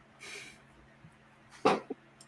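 A single short dog bark about 1.6 s in, with a smaller sound just after it.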